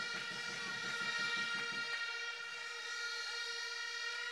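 Rally crowd blowing horns: several steady, held horn tones sounding together over crowd noise, in reaction to the speech.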